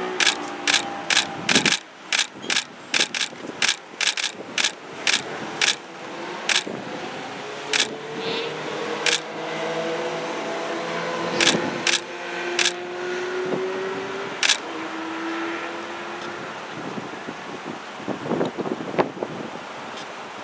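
Camera shutter clicks, fired in quick runs of about three a second for the first six seconds, then single clicks every second or so. Street traffic runs underneath, with a vehicle engine passing in the middle.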